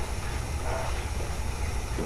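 Steady low rumble of background noise, with a faint voice heard briefly a little past halfway.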